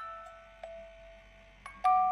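A small music box playing a slow tune: single plinked metal notes that ring and fade one after another, about one or two a second.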